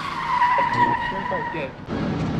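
A tyre-screech sound effect: one long, steady high squeal that dips slightly in pitch at the start, holds for nearly two seconds, then cuts off just before the end.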